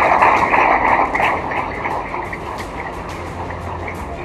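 Audience applauding, a dense patter of many hands that slowly dies down.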